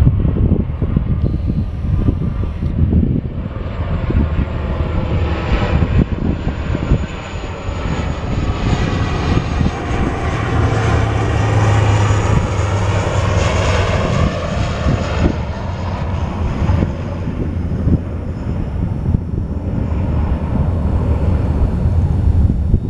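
Twin-turboprop airliner passing low on its landing approach. The engine and propeller sound swells to a peak about halfway through, with its pitch falling as the plane goes by, then fades.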